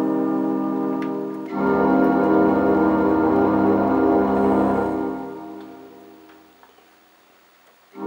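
Roland D-20 synthesizer playing a dual patch with two tones layered: a held chord, then about one and a half seconds in a fuller chord with a deeper bass that sustains and fades away over the last few seconds.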